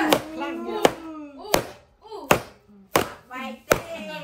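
A run of sharp knocks, about one every three-quarters of a second, with people talking between them.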